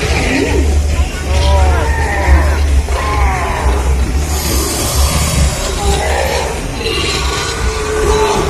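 Theme-park dark-ride soundtrack: music and arching vocal calls over a steady low rumble, with a burst of hissing about halfway through.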